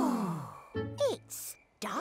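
Several cartoon voices give a long, wordless, sighing 'ooh' that falls in pitch, then a second, shorter falling vocal sound about a second in, over soft children's-show music.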